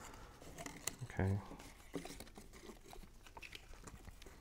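Folded paper-craft card pieces handled by fingers: faint crinkling with scattered small clicks as the paper tabs are pressed and lifted.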